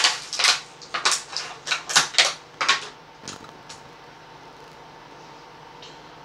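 Clear plastic packaging crinkling and rustling in a quick run of short crackles as it is pulled open by hand, stopping about halfway through and leaving faint room hiss.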